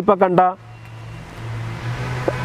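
A man's words end about half a second in, then a motor vehicle's steady low hum grows louder as it approaches.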